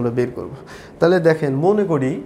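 A man's voice speaking in two stretches with a short pause about half a second in.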